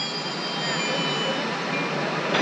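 Stationary diesel passenger train running steadily at the platform: an even engine noise with a few faint, steady high-pitched whines over it.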